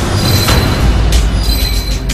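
Title-sequence sound effect: a loud, harsh metallic screech with a thin high squeal over a deep rumble, set within the dramatic intro music.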